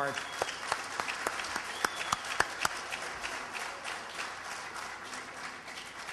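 Audience applauding, the claps densest in the first couple of seconds and thinning out toward the end.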